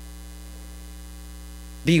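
Steady electrical mains hum, a low even hum with a few faint steady tones above it; a man's voice starts right at the end.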